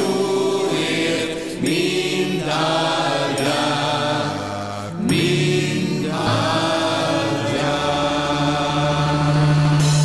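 A Hungarian Christmas song: a singing voice over instrumental backing, closing on a long held low note in the last couple of seconds.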